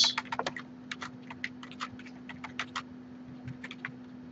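Typing on a computer keyboard: quick, irregular key clicks, densest in the first half-second, then spaced out.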